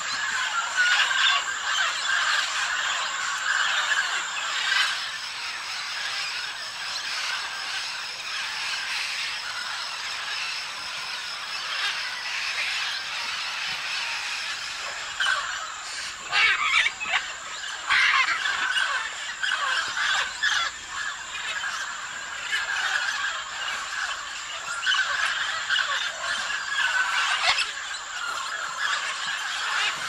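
A flock of macaws and smaller parrots calling and chattering together without pause, with a few sharp, louder squawks a little past the middle.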